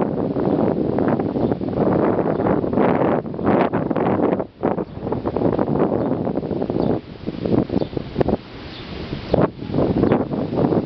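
Hard plastic wheels of a toddler's tricycle rolling over rough asphalt, a continuous crackling rumble that eases off for a couple of seconds near the end, with wind buffeting the microphone.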